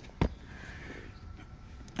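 A single sharp click about a quarter second in, over a faint steady background noise.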